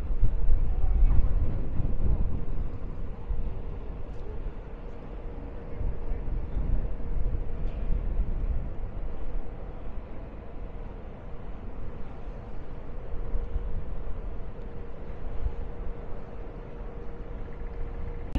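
Wind buffeting the microphone as a gusty low rumble, strongest in the first few seconds, over a steady hum.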